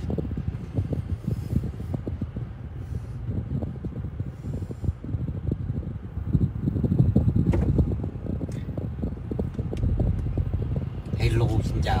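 Low, steady rumble of a car driving, heard from inside the cabin, with small scattered knocks and taps throughout.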